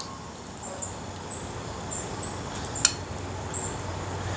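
A small bird chirping repeatedly, short high chips about every half second. A single sharp click sounds near three seconds in.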